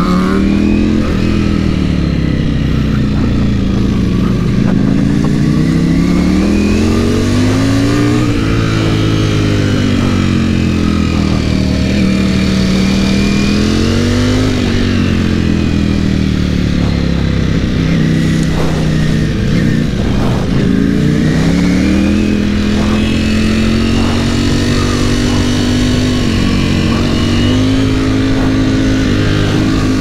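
Ducati Panigale V4's V4 engine heard from onboard in second gear, its revs climbing and falling again every few seconds as the rider accelerates and rolls off through bends, then holding steadier near the end.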